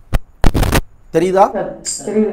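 A sharp click, then a loud burst of noise lasting about a third of a second, followed by a brief stretch of a man's voice and a short hiss.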